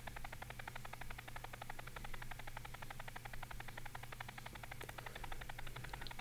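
Faint, rapid, even stutter, a motorboat-like putter, from a video clip's soundtrack being played back in tiny slow-motion snippets as the footage is stepped through frame by frame in a video editor. A low steady hum lies beneath it.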